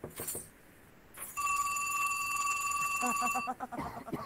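A telephone rings: one steady ringing tone starts about a second and a half in, lasts about two seconds and cuts off. A short sharp knock-like sound comes at the start, and a voice with quick repeated pulses comes near the end.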